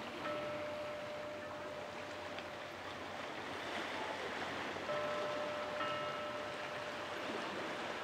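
Quiet, steady rushing noise with a faint held tone that sounds near the start and again past the middle.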